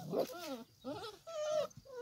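Šarplaninac puppies whining, a string of about five or six short high-pitched whimpers, some rising and falling, one held a little longer past the middle.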